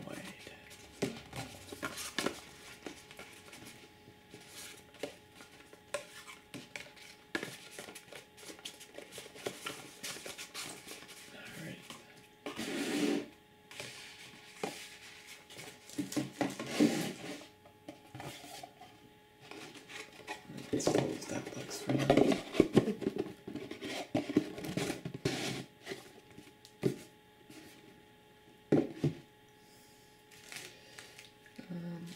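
Cardboard boxes and shrink-wrapped card packs handled close to the microphone: scattered taps, rubs and scrapes of card stock, with a few louder clusters of sliding and shuffling.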